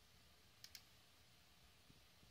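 Two faint computer mouse clicks in quick succession a little under a second in, otherwise near silence.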